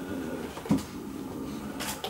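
A pause in a man's speech in a small room: a faint hesitant vocal sound at first, a short low knock-like sound about two-thirds of a second in, and a quick breath near the end.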